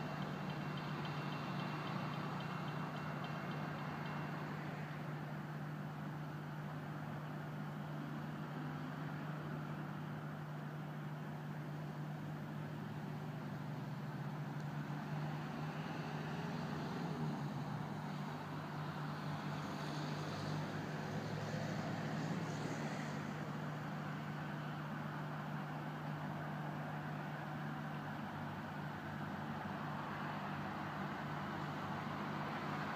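Diesel passenger railcar running at a distance as it creeps toward the platform, a steady low engine hum. A few faint higher tones come and go around the middle.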